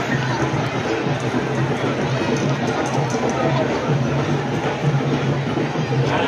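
Candombe drums of a llamadas parade playing a steady, pulsing rhythm, with crowd voices throughout.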